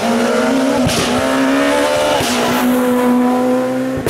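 A Skoda Fabia S2000 rally car's 2.0-litre naturally aspirated four-cylinder engine accelerating hard out of a corner. The engine note climbs, drops sharply at a quick upshift about two seconds in, climbs again and drops at another shift near the end, with a few short cracks along the way.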